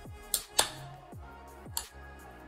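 Three short, sharp clicks from the stiff ring-pull tab of an aluminium drink can being forced, over background music with a deep, falling bass beat.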